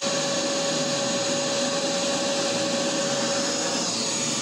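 A small 2-peak-horsepower wet/dry shop vac running at full speed, a loud steady rush of air with a high motor whine, just after its motor has spun up.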